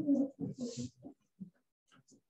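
Brief, muffled snatches of voices away from the microphone in the first second, then only faint scraps of sound.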